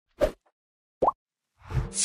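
Two short, cartoonish pop sound effects about a second apart, the second rising in pitch, followed near the end by a swelling whoosh that runs into the intro music.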